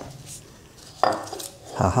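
A steel plate from a milling vice is set down on the cast-iron table of a milling machine: one sharp metallic clank about a second in, ringing away over about half a second.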